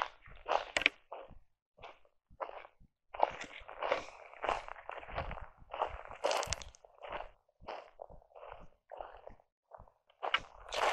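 Footsteps crunching on rough roadside ground at a walking pace. The first few seconds hold only scattered steps, then about two to three steps a second.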